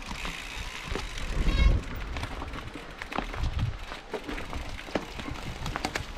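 Mountain bike rolling down a rough gravel and leaf-covered trail: steady tyre noise with the bike rattling and clicking over bumps, and a heavier thump with a brief squeak about a second and a half in.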